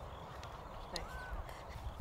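A crow cawing faintly once, about a second in, over a low outdoor rumble.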